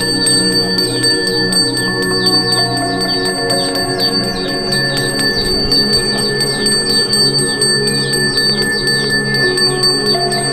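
A small Balinese ceremonial handbell is rung continuously, with rapid strikes and a steady high ringing, over background music with sustained low notes.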